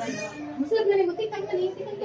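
Women talking in a small room; only speech, no distinct other sound stands out.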